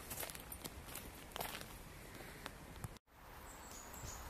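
Faint footsteps on a gravel path over low outdoor background noise. The sound cuts out briefly about three seconds in.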